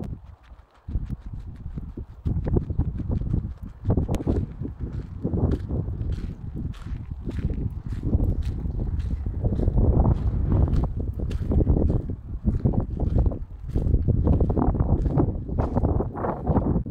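Strong wind buffeting a phone's microphone in gusts, with footsteps on gravel ticking along at a walking pace.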